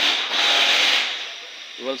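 A loud rubbing hiss lasting about a second, then fading, followed by a spoken word near the end.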